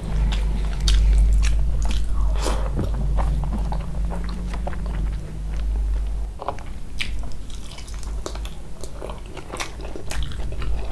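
Close-miked mouth sounds of a person eating mutton curry and rice: chewing, with wet smacks and frequent irregular clicks as she bites into a piece of mutton. A steady low rumble runs underneath.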